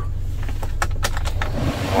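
Several sharp clicks from the Toyota Innova's manual air-conditioning fan-speed knob, then the blower fan's air rush rising about one and a half seconds in. A steady low engine hum runs underneath.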